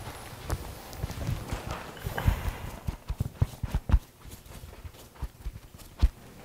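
Irregular low knocks and bumps close to the microphone, the loudest about two and four seconds in: handling noise from the barber's hands and tools moving around the client's head.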